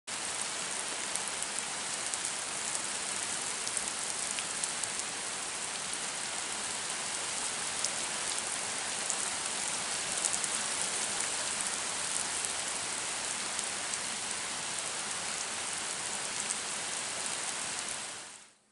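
Steady rain falling, with many individual drops ticking close by; it fades out at the very end.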